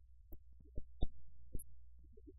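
A low steady hum with four or five short, dull knocks spread through it.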